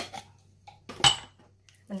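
A metal spoon clinks once against a small glass bowl about a second in: a sharp clink with a short ring.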